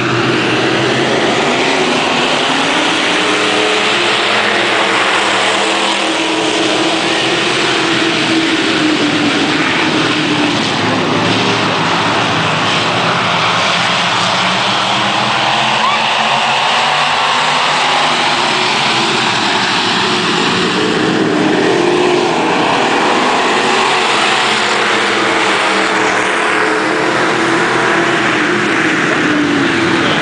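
A pack of dirt-track race cars running hard at racing speed, loud and continuous, with engine pitches sliding up and down again and again as cars pass and go round the oval.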